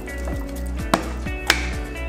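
Background music with a steady beat. Over it come two sharp clicks, about a second in and near three quarters of the way through, the second louder, as a soy sauce bottle knocks against the glass jar it is filling and is set down on the countertop.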